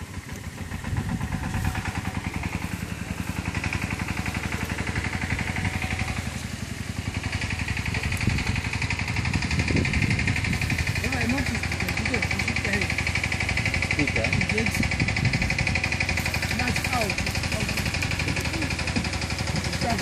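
A small engine running steadily, coming up about a second in, with a fast even firing pulse.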